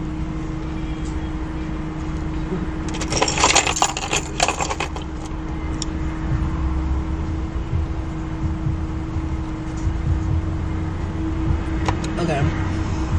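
Ice rattling in a plastic cup of iced coffee for a couple of seconds, about three seconds in, over a steady low hum inside a car.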